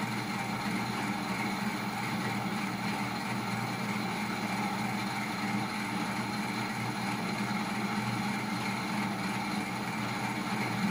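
Small test rig with an electric motor driving a gear, running steadily: an even mechanical hum with several constant tones, unchanging throughout.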